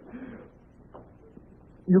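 Studio-audience laughter dying away over the first half second, leaving a low quiet with a couple of faint ticks. A man starts to speak near the end.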